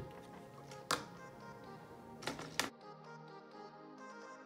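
Background music, with plastic LEGO bricks clicking and knocking as they are handled and pressed together: one sharp click about a second in and two more a little past halfway. The room sound then drops out, leaving only the music.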